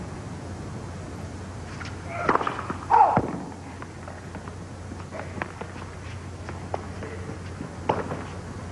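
Tennis ball struck by rackets during a serve and rally. A louder burst of hits comes about two to three seconds in, followed by single sharp strikes roughly every second and a quarter over a steady crowd hum.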